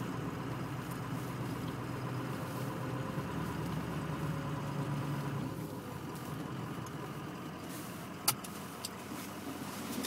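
Vehicle engine running steadily at low speed and idling, heard from inside the cabin, with a sharp click about eight seconds in and a fainter one just after.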